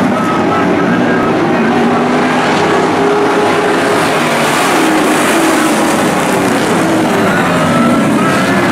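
A pack of late model stock cars racing by, their V8 engines running at high revs, several engine notes overlapping and shifting in pitch.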